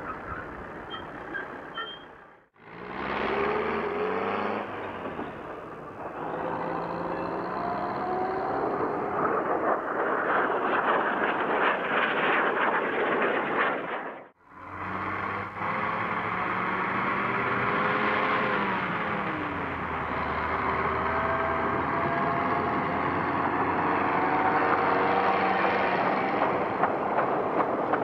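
Small diesel locomotive of a narrow-gauge beach train running with its engine note rising and falling, over a clattery rumble of the train moving along the track. The sound drops out briefly twice, about two seconds in and again about halfway through.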